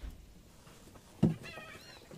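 An animal calling: one short call with a wavering pitch, starting a little over a second in, after a soft thump at the start.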